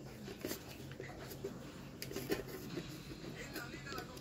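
Quiet room with a steady low hum and a few faint clicks of handling, and a faint voice near the end.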